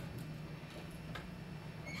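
Dry-erase marker strokes on a whiteboard: a few short, faint squeaks and taps over a steady low room hum.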